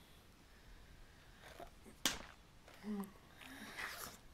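A person in distress: a sudden loud gasp about halfway through, then short whimpering voice sounds near the end.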